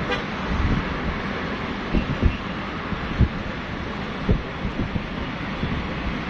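Steady outdoor traffic noise, with a brief car horn toot at the start and several short low thumps.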